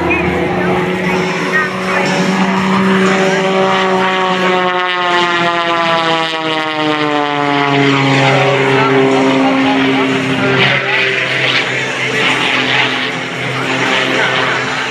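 Extra 330SC aerobatic plane's propeller and engine running at high power. Its note slides steadily down in pitch over several seconds midway through, then holds at the lower pitch as the plane climbs.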